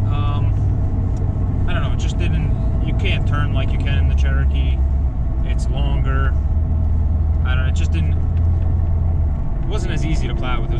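Jeep Cherokee XJ heard from inside the cabin while driving: a steady low engine and road drone under a man's talking. The hum drops lower in pitch about four seconds in and eases off shortly before the end.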